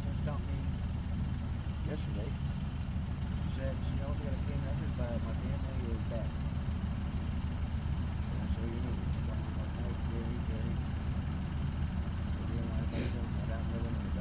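A vehicle engine idling steadily, a low even hum, with faint voices talking in the background.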